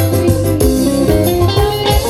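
Live band music played loudly through a PA, with an electric guitar line prominent over bass and keyboards.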